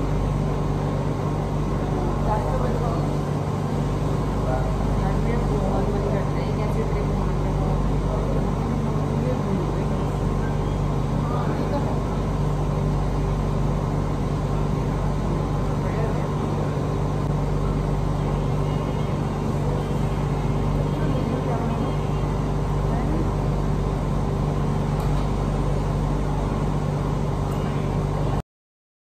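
Food-court ambience: a murmur of distant, indistinct voices over a steady mechanical hum.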